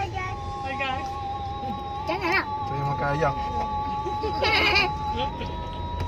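Young children squealing and chattering inside a car over the car's low steady hum, with two loud high-pitched squeals about two and four and a half seconds in. A steady high tone runs underneath and steps up in pitch near the end.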